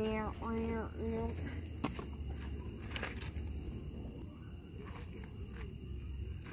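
Three short sing-song vocal syllables from a higher-pitched voice in the first second, followed by two faint sharp clicks over a steady low rumble.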